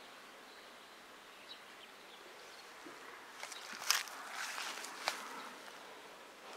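Faint outdoor garden ambience, then, about three and a half seconds in, nearly two seconds of rustling and footsteps through grass with a few sharp clicks.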